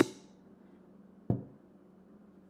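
Rap vocal and beat cut off abruptly at the very start, leaving faint room hiss. A single sharp click sounds about a second and a quarter in.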